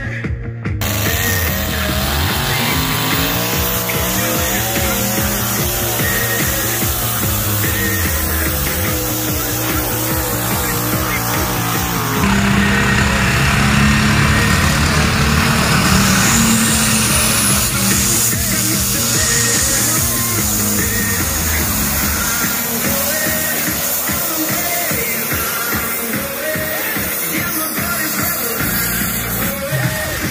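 Diesel pulling tractor's engine running flat out under load during a pull, its pitch climbing as the run gets going. It gets louder from about twelve seconds in.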